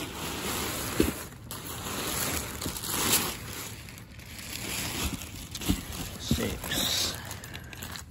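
Folded nylon inflatable fabric rustling and a plastic bag crinkling as hands rummage through the box, with a few brief soft knocks.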